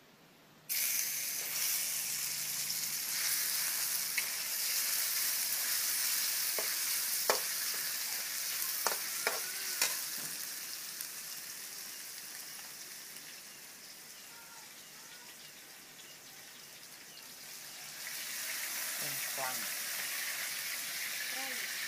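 Raw beef dropped into a hot oiled steel wok, starting to sizzle the instant it hits, with a few sharp clicks of the metal spatula against the wok. The sizzle dies down gradually through the middle and picks up again near the end.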